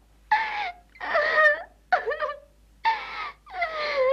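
A small pet animal whimpering: a run of five short, high whines about a second apart, each wavering in pitch.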